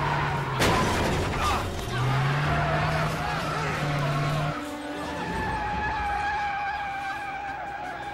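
Action-film car sound mix: tyres screeching and a sharp crash with breaking glass about half a second in, over vehicle engine noise, with steady held tones of a music score in the second half.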